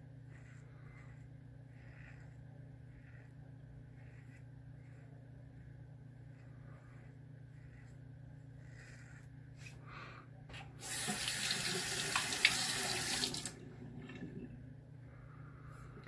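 King C Gillette double-edge safety razor with an Astra blade on its fifth use, scraping through stubble in short repeated strokes across the grain; the blade is still cutting well. About eleven seconds in, a water tap runs loudly for two to three seconds.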